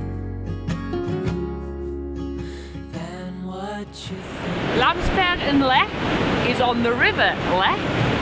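Background music for about the first four seconds, then the steady rush of river water pouring over a weir, with brief high gliding sounds over it.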